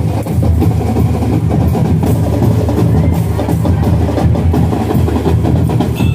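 Marching band drumline playing loudly: snare drums, bass drums and cymbals in a fast, dense rhythm.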